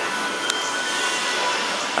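Steady indoor shop ambience, an even noise with faint held tones in it, and a single sharp click about half a second in.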